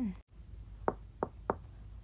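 Three quick knocks on a door, about a second in, each a third of a second or so apart.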